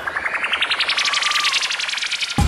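Synthesized rising sweep used as a transition in a dance-routine music mix: a rapid train of pulses climbing steadily in pitch, with no bass under it.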